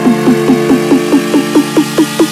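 Dubstep track: a buzzy synth note repeated about five times a second, each note dropping in pitch, over a steady low bass tone, building towards a faster roll.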